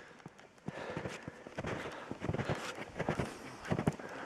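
Footsteps in snow along a trail, a run of steps starting about half a second in.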